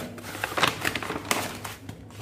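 Paper rustling with a few sharp crinkles as a folded sheet of paper is slid into a paper envelope, the crisper crackles coming about half a second and just over a second in.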